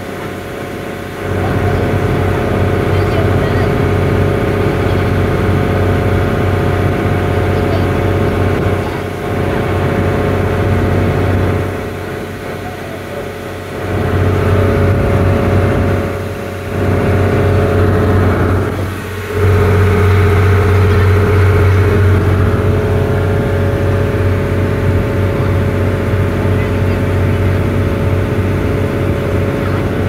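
A charter fishing boat's inboard engine running steadily under way, a constant drone with the rush of the wake along the hull. The level drops briefly a few times.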